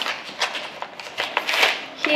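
Paper pouch and a clear plastic bag rustling and crinkling as the bag of treats is pulled out, in several short irregular bursts.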